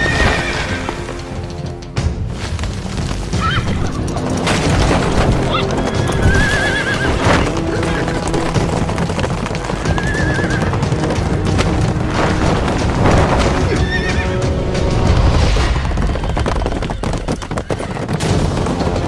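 Horses galloping, their hoofbeats mixed with several whinnies, the clearest about six and ten seconds in, over background music.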